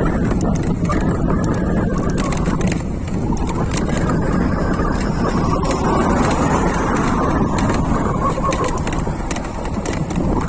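Steady rumble of an e-bike ride along a road: wind on the microphone mixed with tyre and road noise, with faint clicks and rattles.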